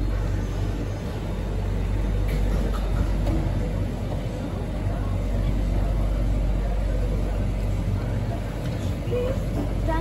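Steady low hum and rumble, with faint voices in the background.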